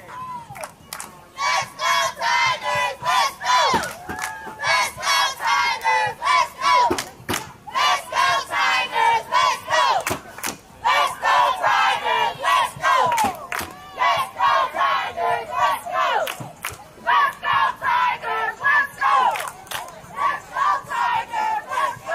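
Youth cheerleading squad, young girls, loudly shouting a cheer in unison as they march, in short rhythmic calls repeated phrase after phrase with brief pauses between rounds.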